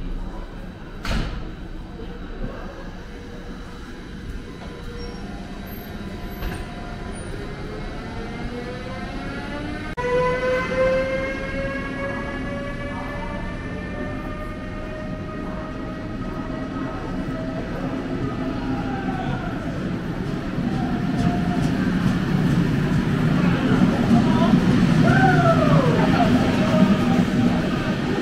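Electric locomotive pulling a rake of passenger coaches away from the platform. From about ten seconds in there is a rising electric whine as it gathers speed, then the coaches' wheels rumble past louder and louder, with a short wheel squeal near the end.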